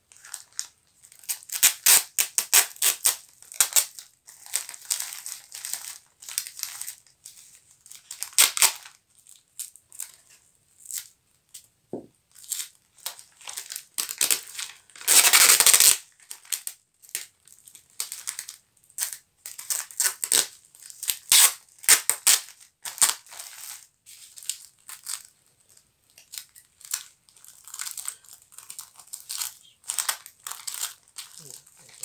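Plastic bubble wrap crinkling and rustling in quick crackly spells as hands fold it around a paper package. About fifteen seconds in, a loud, unbroken rip of about a second, which is packing tape being pulled off its roll.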